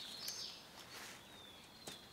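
A bird singing faint, thin, high whistled notes, some sliding down in pitch, over quiet outdoor ambience. A few faint clicks come from tent-body clips being snapped onto the aluminium tent pole.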